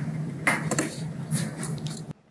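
A few light metallic clinks and rattles, about half a second and a second and a half in, over a steady low hum.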